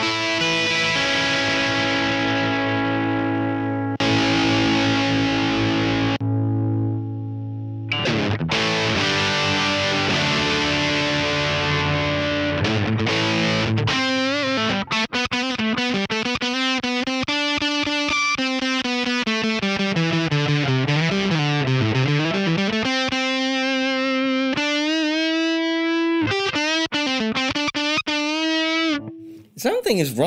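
Electric guitar played through a Vox MVX150H amp head on its crunch setting, heard from the amp's DI out with a fuzzy distortion. Distorted chords ring out for the first half, then notes bend down in pitch and back up again and again.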